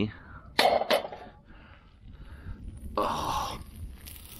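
A man coughing twice in quick succession, about half a second and a second in, then a short rasping noise near the end.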